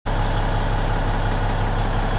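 Cummins N14 turbo diesel in a 1996 Peterbilt idling steadily, heard from inside the cab, with a low throb under a high hiss.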